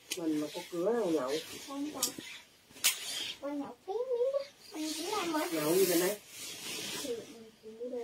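A woman speaking softly, broken by two sharp clicks about two and three seconds in, with a rustle of handled fabric.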